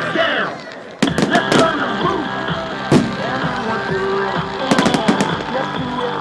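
Fireworks bursting over music: a sharp bang about a second in, a few more quick bangs after it, another around three seconds, and a rapid cluster of crackling reports about five seconds in.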